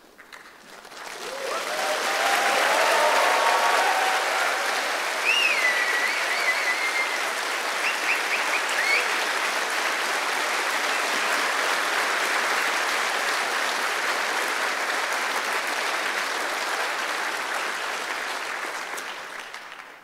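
Audience applauding after a talk ends. The clapping builds over about two seconds, holds steady with a few cheers and whistles in the first half, and dies away near the end.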